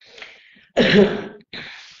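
A person clears their throat once, a short rough rasp about three-quarters of a second in, with a breath before it and a fainter breathy exhale after.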